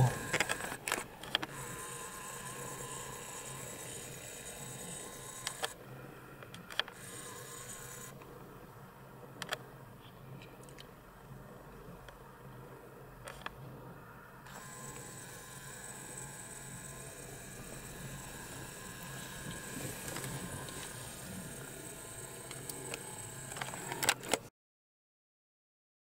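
Faint steady outdoor background noise with a few scattered clicks, cutting off to silence about a second and a half before the end.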